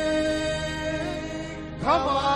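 Devotional aarti music: a long held note sounds steadily, then a loud new note slides up into place near the end.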